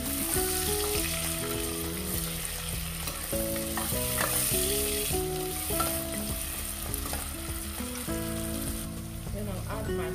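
Sliced red onions with bay leaves frying in oil in a pot, sizzling steadily while a wooden spoon stirs them.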